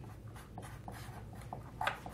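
Pens scratching on paper as several people write at a table, with a brief louder tap or click near the end.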